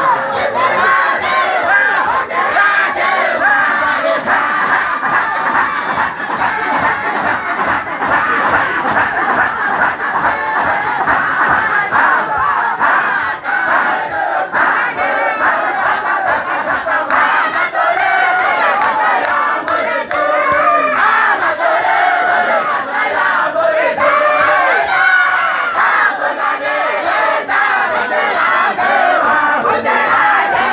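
A large group of men chanting loudly together in a Sufi dhikr, many voices overlapping in a continuous collective chant.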